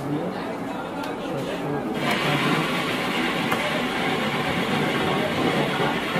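Indistinct voices talking. About two seconds in, a dense steady noise comes in and covers them.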